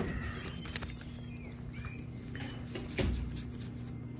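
Pokémon trading cards sliding and rubbing against each other as a freshly opened pack is flipped through by hand, with a sharper card click about three seconds in.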